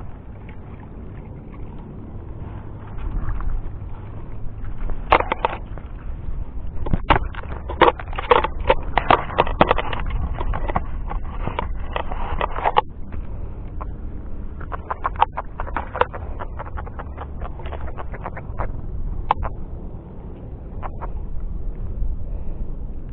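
Wind rumbling on the microphone, with a run of irregular sharp clicks and knocks from fishing tackle as a hooked fish is reeled in and landed; the clicks come thickest about a third of the way in.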